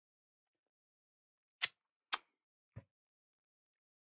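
Two short, sharp clicks about half a second apart, then a fainter low tap, in near quiet while a drop of e-liquid is being tasted.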